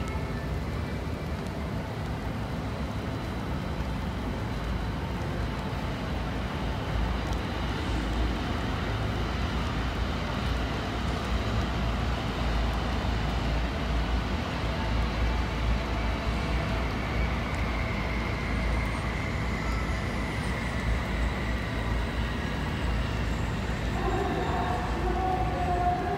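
Steady rumble of rail and road traffic from the lines beside the yard, swelling a little in the middle, with a faint high whine in the later part.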